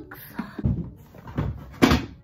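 Things being handled and set down in a cardboard box while packing: a few dull knocks and thuds, the loudest near the end.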